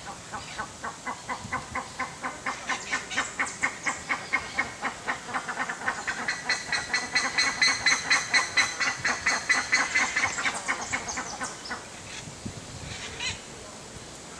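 A bird calling a long, rapid series of repeated notes, about five a second, that grows louder and then fades out near the end.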